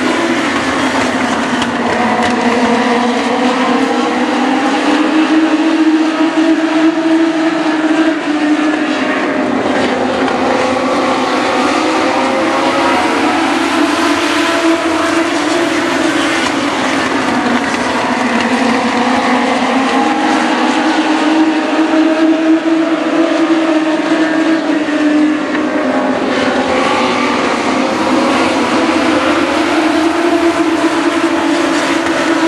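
A pack of US Legend race cars, with Yamaha four-cylinder motorcycle engines, racing at speed around an asphalt oval. The engines run together in a steady din whose pitch rises and falls as the cars accelerate out of the turns and lift into them.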